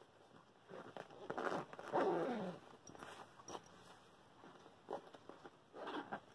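Zipper and handling noise of a small zippered satin-and-vinyl cosmetic bag being worked by hand, several short rasps and rustles. About two seconds in there is a brief falling voice-like sound.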